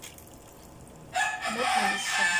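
A rooster crowing: one long, loud call that starts about a second in, after a quiet first second.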